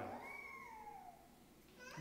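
A small child's high-pitched drawn-out cry, one call that rises briefly and then slides down in pitch, fading out a little over a second in.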